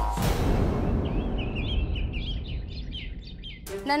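Small birds chirping in short repeated calls from about a second in. Under them, a noisy swell starts suddenly near the beginning and fades away over the next few seconds.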